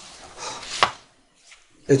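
A short breath drawn in, ending in a single sharp click just before a second in.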